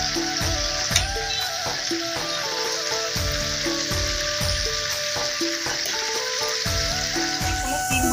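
Sliced flat beans (sheem) sizzling steadily in hot oil in a kadai, stirred now and then with a wooden spatula. Background music with a regular beat plays underneath.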